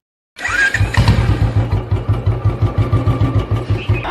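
Motorcycle engine starting about half a second in, then idling with an even beat of about seven pulses a second.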